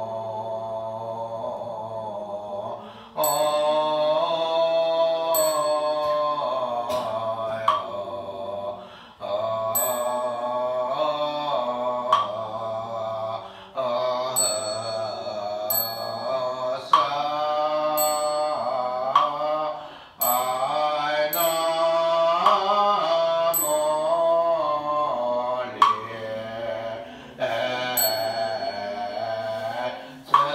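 A small mixed group of monk and lay devotees chanting a Buddhist liturgy together in slow, drawn-out melodic phrases, with short pauses for breath. Sharp percussion strikes every second or two keep time, some with a brief high ring.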